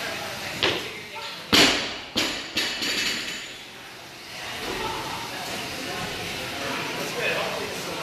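Loaded barbell with bumper plates dropped onto a rubber gym floor: one heavy thud about a second and a half in, followed by two smaller bounces.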